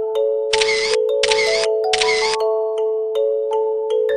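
Light background music with a bright mallet-percussion melody. About half a second in come three identical short hissing sound effects, each about half a second long, one after another.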